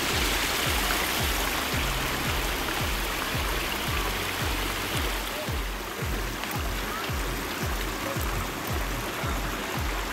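Water of a small stream running over rocks, with background music with a steady low beat over it.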